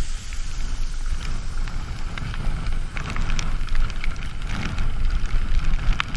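Mountain bike (a YT Capra) descending fast over rough grass, with a steady low rumble of wind buffeting the microphone and frequent sharp rattling ticks from the bike over the bumpy ground.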